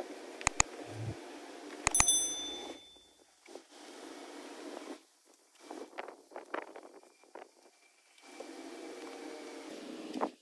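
Handling and wiping sounds around a car door. Two quick clicks, then about two seconds in a bright metallic ping that rings briefly, over a steady low hum that cuts out and returns later.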